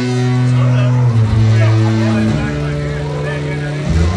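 A live band playing long, held low bass notes that shift to a new pitch every second or so, with fainter higher tones sounding above them.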